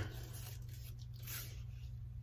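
A light knock, then ribbons rustling and swishing as a layered stack of them is gathered up by hand, with a second swish a little past halfway.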